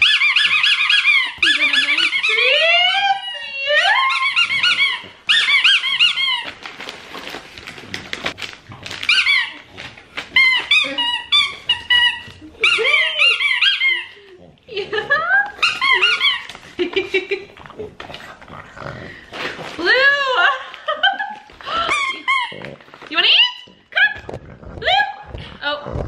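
French bulldog puppy whining in repeated high-pitched squeals that glide up and down, excited by a chew toy held just out of reach in its package.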